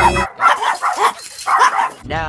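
Small dog barking in a quick run of sharp, high-pitched yaps, with a short pause before the last couple. Music cuts off just before the barking starts.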